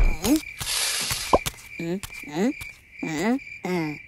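A cartoon character's short squeaky vocal sounds, about six in a row, mostly rising in pitch, with a soft hiss in the first second and a half.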